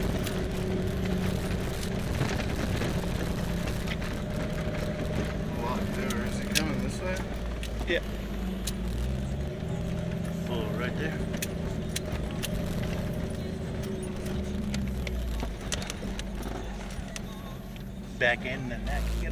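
Vehicle engine running steadily from inside the cab while driving slowly over a rough dirt road. Its pitch steps a few times, and sharp knocks and rattles of the body and suspension come over the bumps.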